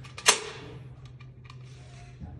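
Coins dropped into an offering plate: one sharp clink about a third of a second in that rings briefly, followed by a few faint clicks of coins.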